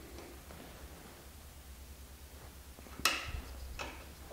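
Pillar drill humming low and steady after drilling a hole through steel, with a sharp metallic click about three seconds in and a fainter one near the end.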